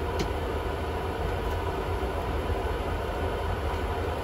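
Steady in-flight cabin noise of a regional jet airliner: an even rumble with a rushing hiss of engines and airflow, and a faint steady hum.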